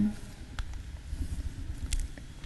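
A pause in speech: steady low rumble of room tone, with a few faint clicks.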